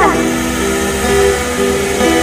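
Two acoustic guitars playing a held, slow accompaniment, with a woman's sung line sliding down and ending right at the start.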